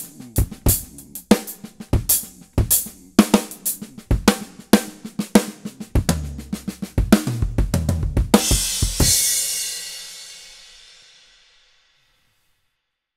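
Funk groove on a drum kit with a copper snare, built on paradiddle-style stickings: bass drum and hi-hat under quiet ghost notes on the snare, with loud snare accents played as rim shots that move the backbeat around. The groove ends with a cymbal crash about eight seconds in, which rings and fades away over the next three seconds.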